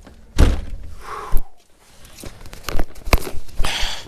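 Knocks and thunks from handling feed buckets and containers: a hard thunk about half a second in, a second sharp knock just before a second and a half, then a string of clicks and rustling.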